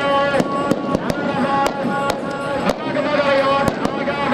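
Firecrackers going off in an irregular string of about eight sharp bangs, over shouting voices and music.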